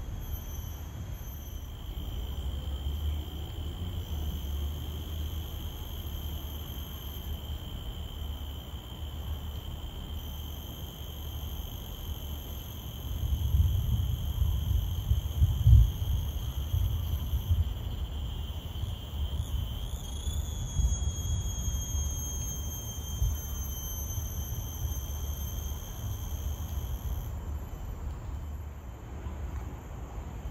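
Insects in the trees holding a steady, high, thin drone that wavers around two-thirds of the way in and stops near the end. Under it runs a low rumble on the microphone, loudest about halfway through.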